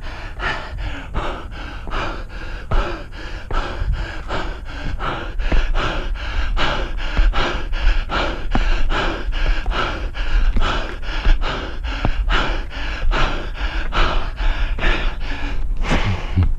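A runner's hard, rapid breathing in a quick, even rhythm of about three breaths a second as he climbs a steep stair trail at speed, with a steady low rumble underneath.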